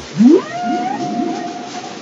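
Whale call sound effect: a low upward swoop near the start, then a long held higher call with a few fainter rising swoops beneath it.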